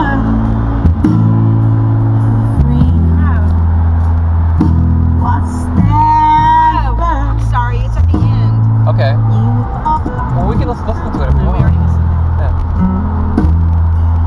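Music playing loud on a car stereo, led by a heavy bassline of long held bass notes that change every second or two, with a voice over it in the middle.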